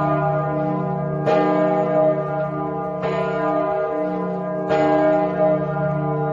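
A bell tolling slowly, struck about every 1.7 seconds: three strokes, each ringing on into the next.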